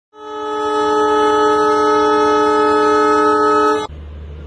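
Train horn sounding one long, steady blast, a chord of several tones, cutting off suddenly just before the end.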